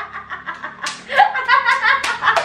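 A group of women laughing, with sharp hand claps starting about a second in.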